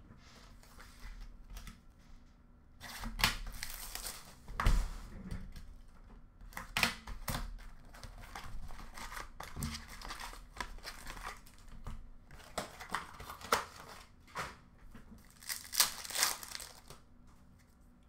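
Trading-card box and pack wrappers being opened: plastic and foil crinkling and tearing in irregular bursts, loudest about four to five seconds in and again near the end.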